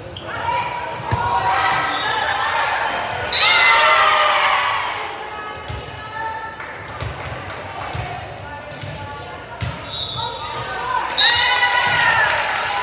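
A volleyball rally in a large, echoing gym: sharp thumps of the ball being hit, with girls' high-pitched shouts and calls. A loud cheer rises near the end as the point ends.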